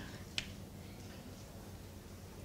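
A single short, sharp click about half a second in, over a faint steady low hum.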